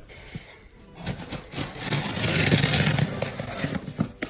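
Scissors cutting open a cardboard shipping box, a continuous scraping cut that starts about a second in.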